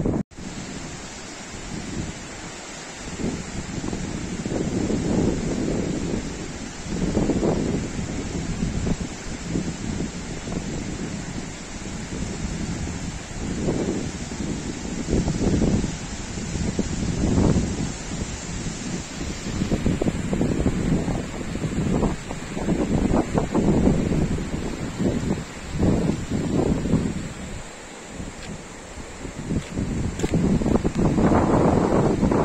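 Wind buffeting the microphone in irregular gusts over a steady rushing hiss of the flooded Manjira river flowing under the bridge.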